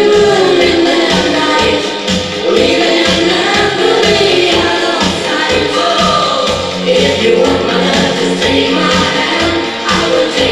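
Hi-NRG dance music played from a DJ's turntables and mixer: a steady, even beat under sung vocals.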